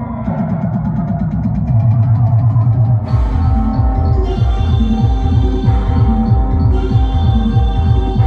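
Live band music on an electronic keyboard and electronic drum pads, with sustained synth tones. A fast ticking rhythm runs over the first three seconds, then a heavy, pulsing bass beat comes in about three seconds in.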